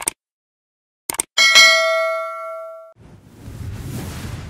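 Subscribe-button sound effect: a click at the start, two quick clicks about a second in, then a bright bell ding that rings out for about a second and a half. From about three seconds in a low rushing whoosh builds up.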